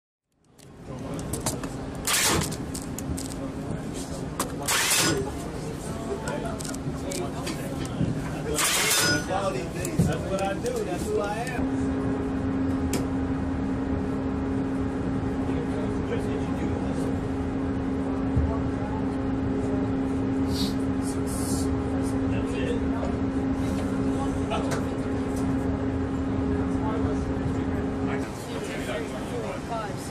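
Steady low machinery hum with indistinct voices. A few short, sharp noises come in the first ten seconds, and the hum settles in from about twelve seconds on.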